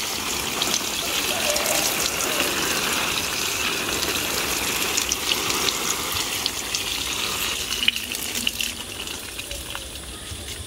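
Water showering from a plastic watering can's rose onto the leaves of potted seedlings, a steady spray with small scattered ticks, fading near the end as the flow thins.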